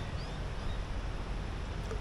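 Outdoor ambience over water: a steady low rumble of wind on the microphone, with a few faint, short high chirps.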